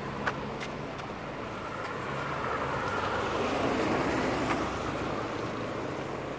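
Road traffic: a steady hum of vehicle engines that swells a little towards the middle, with a few light clicks over it.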